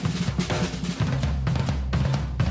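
Drum kit played with sticks: quick snare and bass-drum strokes with cymbals.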